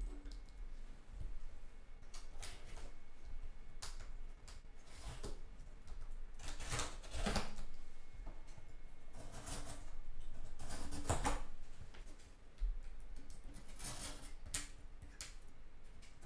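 Packing tape being cut and pulled off a cardboard shipping box, with cardboard rubbing and rustling: irregular scratching and tearing sounds in short bursts.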